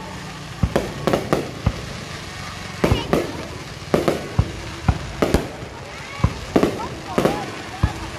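Aerial fireworks launching and bursting: a run of sharp bangs at irregular intervals, roughly two a second.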